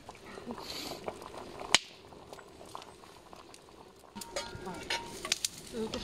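Herbal brew boiling in a metal camp pot over a campfire, with one sharp click about two seconds in and a few lighter clicks later.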